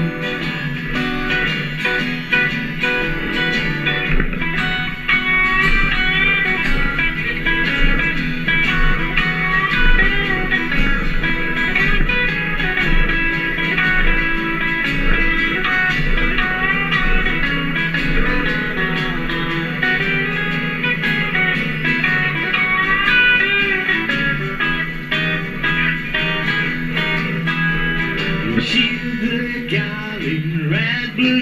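Live rockabilly trio playing an instrumental break without vocals: an electric guitar lead line over strummed acoustic rhythm guitar and a plucked upright double bass.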